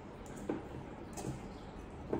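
Spoon pressing and scraping mint leaves in a wire mesh strainer over a glass, with a couple of faint scrapes.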